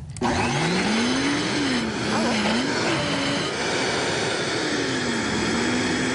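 Vitamix high-powered blender switching on just after the start and running hard, puréeing kabocha squash soup; its motor pitch rises as it spins up, then wavers as the load shifts.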